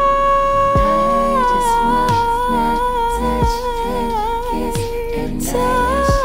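A female R&B singer holds one long note for about five seconds, its pitch stepping down slightly after a second or so, over a slow backing track with a deep kick drum about every second and a half. Near the end she moves into a new phrase.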